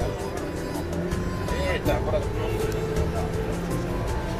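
Background music over the steady rumble of a minibus on the road, heard from inside the cabin, with voices.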